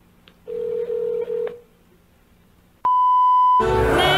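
Telephone call sound effects: a steady ringing tone lasting about a second, then a click and a steady higher-pitched beep as the line picks up. Just before the end a sung answering-machine jingle begins.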